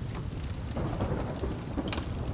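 Thunderstorm sound bed: steady rain with a continuous low rumble of thunder that swells about a second in.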